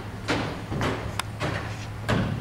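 Footsteps on a stage: three heavy, scraping steps about half a second apart, over a steady low hum.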